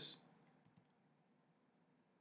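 Near silence after a spoken word trails off, with a few faint clicks just over half a second in.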